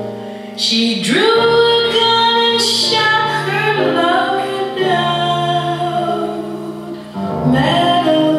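A woman singing a slow song, holding long notes over a musical accompaniment, with brief breaks between phrases about a second in and near the end.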